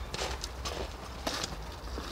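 Footsteps of people walking away outdoors: several short, crisp steps at an uneven pace over a steady low rumble.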